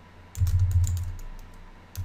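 Computer keyboard typing: a quick run of keystrokes starts about a third of a second in and dies away shortly after halfway.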